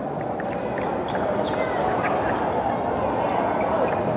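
Crowd hubbub in a large gymnasium, with a few short sharp knocks in the first half.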